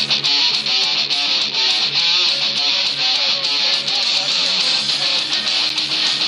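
Loud music with a steady beat.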